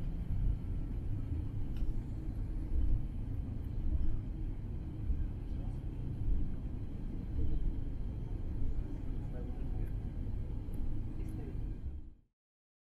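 Airliner cabin noise while taxiing after landing: a low, uneven rumble from the aircraft rolling over the apron with its engines at taxi power.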